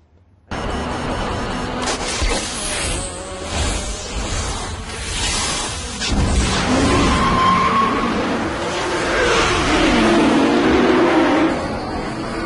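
Movie soundtrack of a night street-race scene: a car engine revving, its pitch rising and falling in the second half, under loud music. It starts suddenly about half a second in.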